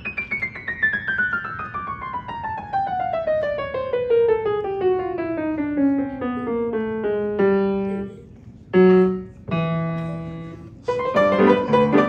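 Grand piano played four hands: a long, fast descending run that slows as it falls, then a few held low chords separated by short gaps, the loudest about nine seconds in. Busier playing picks up again near the end.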